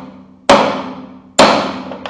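Wooden mallet striking the metal punch of a pellet swaging die. There are two sharp blows about a second apart, each ringing out as it fades. The blows press a cut piece of lead nail into the die to form the skirt of a 4.5 mm airgun pellet.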